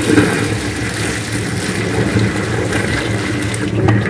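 Just-boiled water poured from an electric kettle, splashing into a stainless steel sink and running down the drain in a steady rush, with a low hum underneath.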